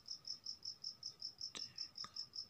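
Faint insect chirping, a steady run of short high chirps about five a second, with one faint click about one and a half seconds in.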